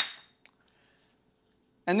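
Small stainless steel measuring cups clinking together: one sharp clink that rings briefly, then a faint tick about half a second later.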